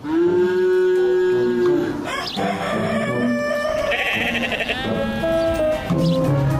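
A sheep bleating, played as a comic sound effect over background music.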